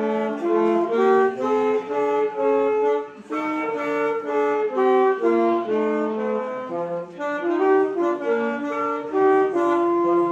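Alto saxophone and a second woodwind playing a tune together in two parts, one line above the other, with short breaths between phrases.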